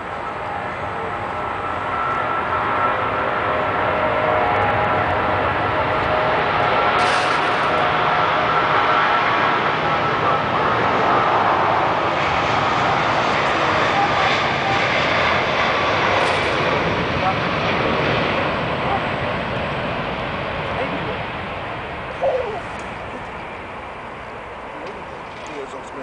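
Turbofan engines of a British Airways Airbus A321-231 climbing out after take-off and passing over, with a high whine in the engine noise. The sound swells for about ten seconds, then slowly fades as the jet moves away.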